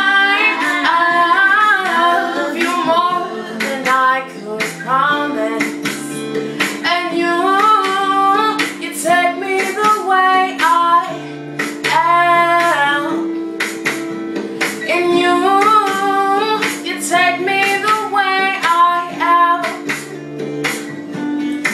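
A young female voice singing a pop song over a plucked guitar accompaniment.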